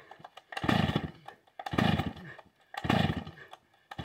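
Vintage Stihl 045 AV two-stroke chainsaw being pull-started: three hard pulls on the recoil starter about a second apart, each turning the engine over in a short burst without it starting and running.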